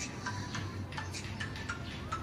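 A few light, irregular clicks over a steady low hum.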